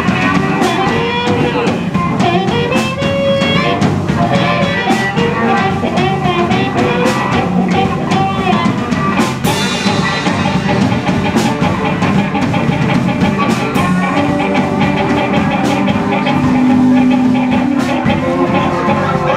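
Live blues band playing: harmonica cupped against a hand-held microphone, over electric guitar and drums with a steady beat.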